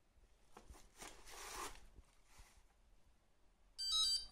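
Faint rustle of the queue display being handled and set down in its cardboard box and packing. Near the end, a short electronic beep from the EasyTurn queue-number display as a number is called.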